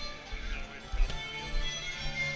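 Live band playing contra dance music, with sustained melody notes over a low beat.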